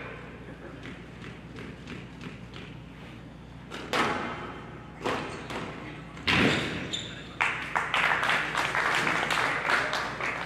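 Squash rally: the ball knocking off rackets, the front wall and the glass walls in sharp hits at uneven intervals. After a few quieter seconds the hits start about four seconds in and come thick and fast in the last few seconds.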